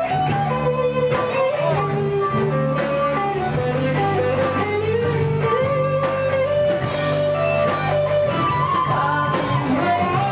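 Live band playing an instrumental passage: an electric guitar lead with bending notes over drum kit, bass and keyboard.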